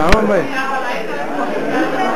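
People talking and chattering in a large room, with one sharp click or knock just after the start, followed by a voice sliding down in pitch.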